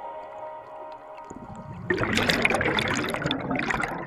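The held final chord of a music track fades out, then about two seconds in a loud rush of bubbles from scuba divers' exhaled air streams past the underwater camera.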